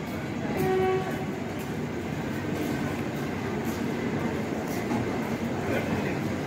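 LHB passenger coaches rolling slowly past a station platform with a steady rumble and faint wheel clatter. About half a second in, a short train horn blast lasts under half a second.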